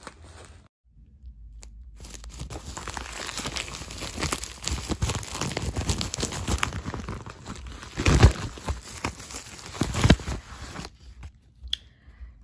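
A mail package being torn open by hand, its paper and plastic wrapping tearing and crinkling, with two louder rips near the end.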